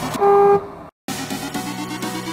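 Electronic background music, broken by one short, loud car horn toot early on, then a brief total dropout of sound before the music picks up again.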